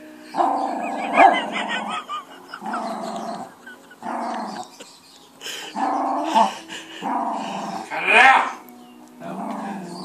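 Small terrier, by its looks a Yorkshire terrier, growling and barking in a run of about seven drawn-out growl-barks, each lasting up to a second or so.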